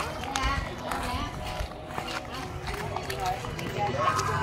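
Indistinct voices talking over footsteps on a paved alley.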